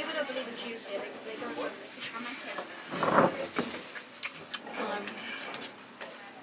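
Quiet, indistinct voices at a restaurant table, with a brief louder burst of noise about three seconds in.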